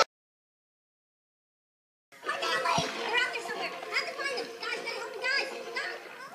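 Dead silence for about two seconds where the recording cuts, then children's high voices chattering and squealing in play, with a single low thump shortly after they start.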